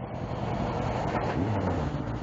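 A MAN tipper truck passing close on a wet road: diesel engine rumble and tyre hiss on the wet tarmac, swelling to their loudest a little past the middle.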